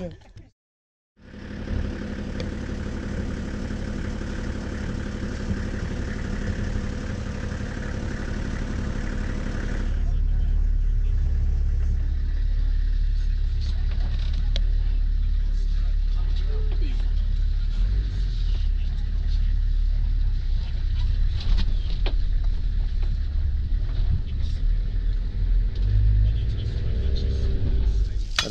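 Vehicle engine heard from inside the cabin. It cuts out briefly near the start, then runs with a steady hum. About ten seconds in, a louder low rumble with scattered rattles and knocks takes over.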